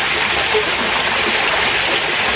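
Water from a rock-wall waterfall pouring and splashing steadily into a hot tub, a constant rush.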